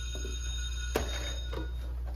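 School bell ringing: a steady ring of several held tones that stops about three-quarters of the way through, marking the end of class. A single sharp knock sounds about halfway through.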